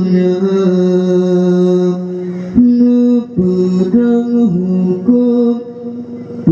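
A man's voice singing an Acehnese qasidah, a devotional Islamic song, into a microphone. He holds one long note for about the first two and a half seconds, then moves through shorter notes that step up and down.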